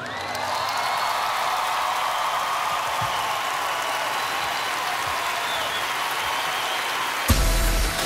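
Large audience cheering and applauding at the end of a live song, a steady wash of claps and shouts with a faint held tone over it. About seven seconds in, pop music with a strong beat cuts in suddenly.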